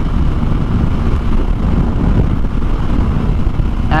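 Kawasaki Ninja 250R's parallel-twin engine running steadily at cruising speed, heard under wind rushing over the helmet camera's microphone.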